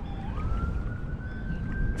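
A siren wailing: a single tone that jumps up in pitch shortly after the start and then keeps slowly rising, over steady wind and water noise on the microphone.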